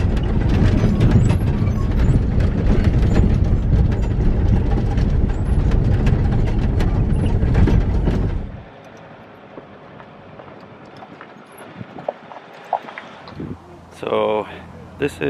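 Vehicle driving over a rough gravel track: a loud rumble of tyres on loose stones with rattling and clattering from the shaking vehicle. It drops away abruptly about eight and a half seconds in, leaving a much quieter background with a few faint clicks.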